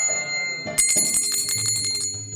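Small brass hand cymbals (karatals) ringing, with a quick run of clashes starting a little under a second in. A low steady drone comes in near the end.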